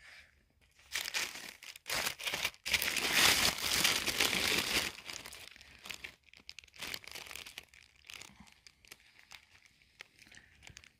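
Craft paper sheets and packets rustling and crinkling as they are picked up and moved. The rustling starts about a second in, is loudest in the middle, then thins out to lighter, scattered rustles.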